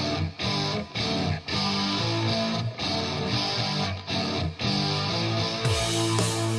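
Electric guitar playing a rhythmic chord riff from a rock recording, with brief breaks between phrases. Near the end the sound grows brighter and fuller.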